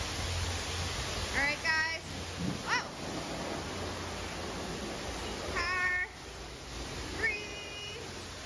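High-pressure car wash wand spraying water over a car: a steady hiss with a low hum underneath. It is broken about four times by short, high-pitched squealing sounds.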